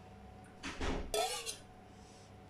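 A steel ladle clinking and scraping against an aluminium cooking pot of rasam: a few short clatters about a second in, one with a brief metallic ring.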